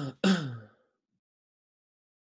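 A person clearing their throat: two short bursts, the second falling in pitch, over in under a second.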